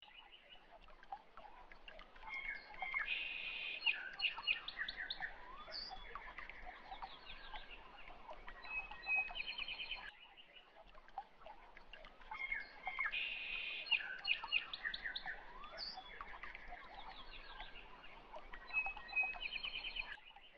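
Faint birds chirping and trilling in quick, high calls. The same run of calls repeats about every ten seconds.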